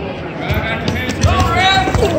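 Spectators yelling as wrestlers scramble: high-pitched shouts rise from just past the middle, over a few dull thumps of feet and bodies on the wrestling mat.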